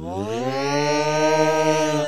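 Alien creature's yell: one long held 'aah' that swoops up in pitch at the start, stays steady for about two seconds, then drops away at the end.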